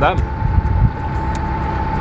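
Narrowboat engine running steadily while the boat cruises: a constant low rumble with a thin, steady high tone over it.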